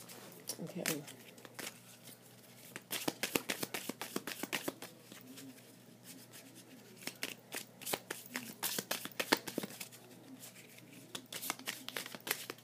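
A deck of oracle cards being shuffled by hand in three bursts of rapid crisp card flicks, with short pauses between them.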